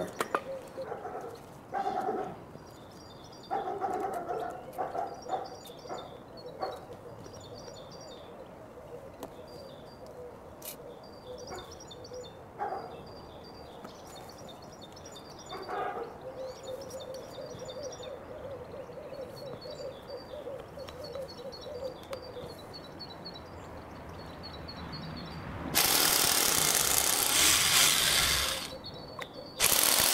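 Garden birds chirping and singing throughout, with scattered knocks and clicks of tools on the track and concrete. Near the end a power tool runs loudly and steadily for about three seconds.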